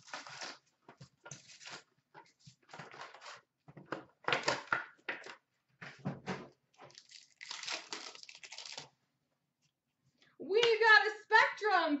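Hockey card pack wrappers being torn open and crinkled by hand, a run of irregular rustling rips over about nine seconds.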